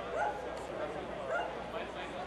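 Many voices talking at once. A short call that rises and falls in pitch repeats about once a second over the murmur.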